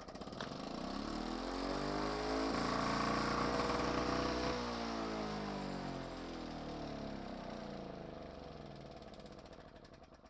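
Victa two-stroke rotary lawn mower pull-started, catching at once and running up to speed. About four and a half seconds in the engine is cut by the newly fitted stop switch, and engine and blade wind down slowly to a stop, the pitch falling steadily.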